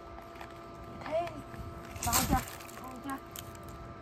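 Faint voices, with a brief rustle of leafy vegetable greens being cut and handled about two seconds in.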